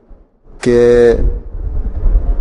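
Speech only: after a brief pause, a man's voice holds one drawn-out Urdu word, over a low background rumble.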